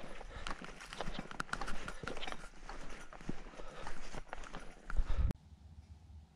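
Footsteps crunching through dry leaves on a dirt trail, an irregular run of crunches and rustles, with a heavier low thump near the end before the sound cuts off sharply about five seconds in.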